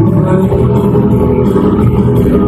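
Live country-rock band playing loudly through a concert PA, with guitars and heavy bass, recorded on a phone microphone close to its limit. The sound is steady, with no break.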